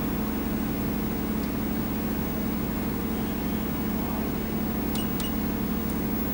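A steady machine hum with a constant low tone, and two brief clicks about five seconds in.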